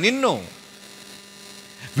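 A man's word ends about half a second in, leaving a low, steady electrical hum from the microphone and sound system during the pause.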